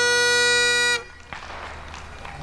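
Great Highland bagpipe holding the final note of a march over its drones, then cutting off suddenly about a second in. After that only faint outdoor background noise remains.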